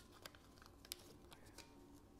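Near silence with a few faint, short clicks and rustles: folded paper lots being handled and drawn from a glass lottery bowl.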